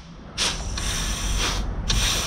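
Compressed-air blow gun hissing into a clutch apply passage of a Chrysler 62TE transmission's input clutch assembly, at 90 psi shop pressure. This is an air check of a clutch piston. One long blast starts about half a second in, and a second begins right at the end.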